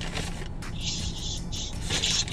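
Paper fast-food bag rustling and crinkling as a hand rummages inside it, in two bursts, the second near the end. A steady low hum runs underneath.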